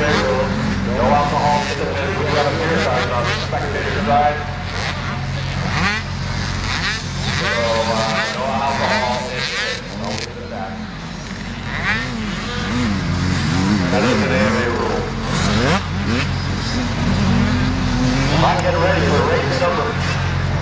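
Motocross bike engines running and being revved, rising and falling several times in the second half, over a steady low hum.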